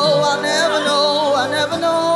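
Live worship music: a woman singing the lead with a group of backing singers, over a band with electric bass.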